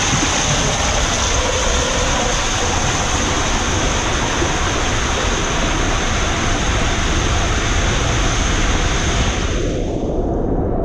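Loud, steady rush of water and a rider's body sliding through an enclosed ProSlide fibreglass water-slide tube. The hiss is briefly muffled near the end.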